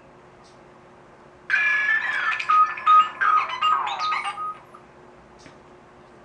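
A short electronic melody of high, beep-like tones, ringtone-like, from the online video playing on the computer's speakers. It starts about a second and a half in, lasts about three seconds and sounds thin, with no bass.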